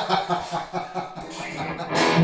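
A 2007 PRS McCarty Korina electric guitar with McCarty pickups being played, a run of picked and strummed notes.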